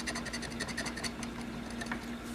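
A round, coin-like metal scratching token rubbed rapidly across a scratch-off lottery ticket, scraping off the silver coating in quick, short strokes.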